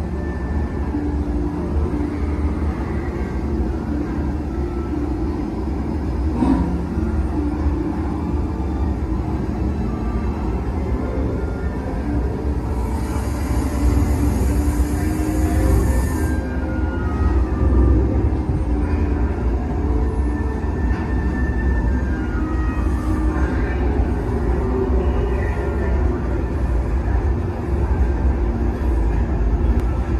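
Eerie music over the low rumble of the Hogwarts Express replica steam locomotive pulling slowly into the platform. A burst of steam hiss lasts about three seconds midway.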